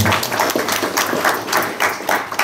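Applause from a small group of people clapping their hands, many claps overlapping irregularly.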